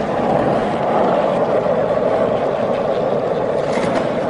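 Skateboard wheels rolling steadily across a smooth hard floor, an even rolling noise, with a few faint clicks near the end.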